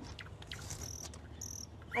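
Crickets chirping faintly in the background, with two short high chirps about a second in.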